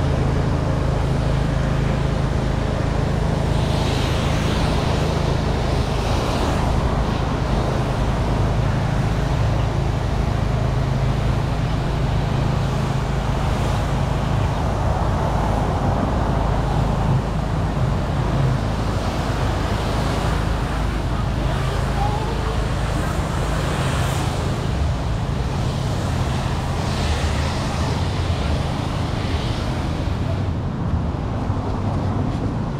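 Road traffic: cars passing on the street beside the walkway, a steady, unbroken rumble that swells a few times as vehicles go by.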